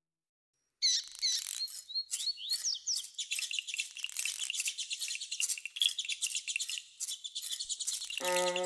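Birds chirping, starting suddenly about a second in: a dense run of quick high chirps, with a few short whistled glides early on.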